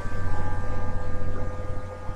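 A steady electrical hum with a few constant high tones over a hiss, the background noise of the recording setup.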